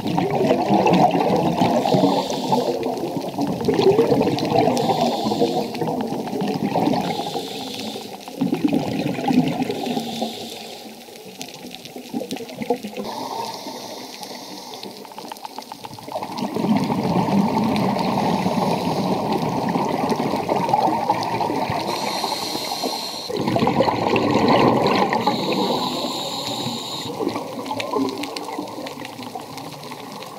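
Scuba diver breathing underwater through a regulator: long rushes of exhaled bubbles lasting several seconds each, with quieter gaps and short higher hisses between them.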